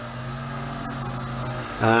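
A steady low hum, ending with a brief spoken 'um' near the end.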